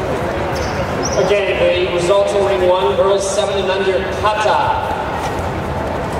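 A raised voice calling out for about three seconds over the steady hubbub of a busy sports hall.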